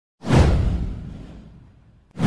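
A cinematic whoosh sound effect with a deep low boom. It starts sharply about a fifth of a second in and fades away over about a second and a half.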